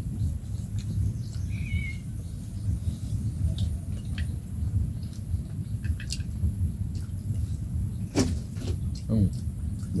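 A steady low rumble with a thin, steady high-pitched whine above it. A few light clicks of chopsticks and spoons against metal bowls and plates come through it, the sharpest about eight seconds in.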